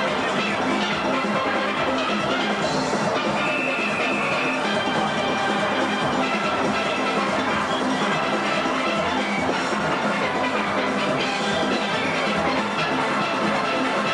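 A full steel band playing live, many steelpans ringing together in a dense, steady tune.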